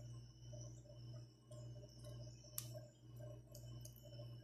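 Faint steady low hum that swells and dips, with a few light clicks from a silicone basting brush against the sauce bowl and chicken. The loudest click comes a little past halfway.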